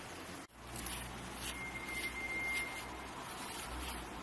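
A deshedding brush swishing through a pug's short coat in several quick strokes, over a faint outdoor hiss, with a brief steady high-pitched tone in the middle.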